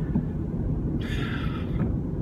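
Steady road and engine rumble inside a moving car's cabin, with a short breathy hiss about a second in.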